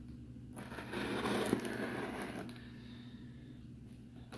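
Folding pocketknife blade slitting the packing tape along the seam of a cardboard shipping box. The cut starts about half a second in and lasts about two seconds.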